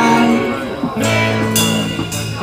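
Live rock band playing: amplified electric guitars with bass and drums, held chords giving way to a fresh attack about a second in.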